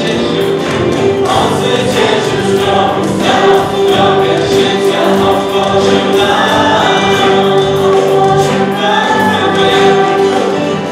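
A church worship band playing a song live: several voices singing together over acoustic guitar, cello, violin, keyboard and hand drums, with a steady beat.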